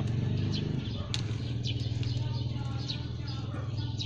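Birds chirping in short, faint calls over a steady low mechanical hum, with a single sharp click about a second in.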